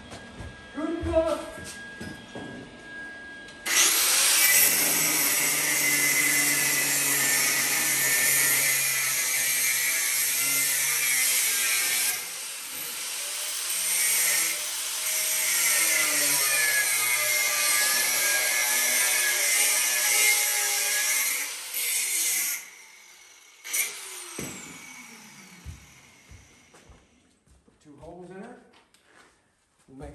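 Angle grinder cutting a steel bracket. It starts about four seconds in and runs for close to twenty seconds, easing off briefly near the middle, its whine wavering as the wheel bites. It stops abruptly, followed by a few quieter light noises.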